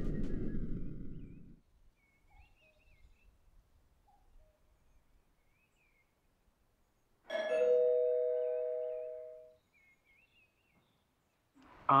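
A doorbell chime rings once about seven seconds in, two tones sounding together and dying away over about two seconds. Before it, the tail of a music cue fades out within the first second and a half, leaving near silence with faint high chirps.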